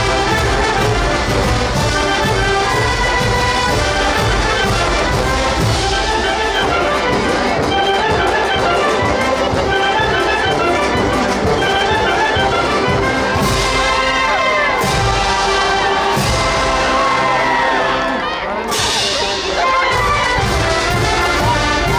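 A massed Oaxacan wind band of trumpets, trombones, sousaphones and clarinets plays together, loud and full. The sound briefly drops in level near the end.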